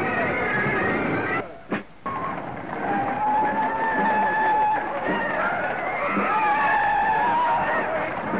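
Street parade sound on an old film soundtrack: crowd voices shouting over long held notes. The sound drops out briefly about a second and a half in, then comes back.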